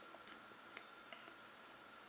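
Near silence, with a few faint clicks and ticks as a plastic LG mobile phone is turned over in the hands.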